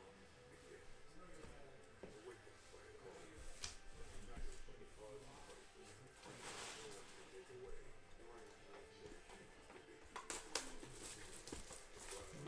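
Quiet handling noise of trading cards and cardboard card boxes being shuffled and moved about. There is a brief swish about halfway through and a few sharp clicks near the end.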